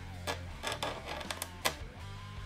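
Hobby knife cutting mask lines on the inside of a clear polycarbonate Team Associated B7 buggy body shell: a run of short clicks, about seven, the loudest about three quarters of the way in, over a low steady hum.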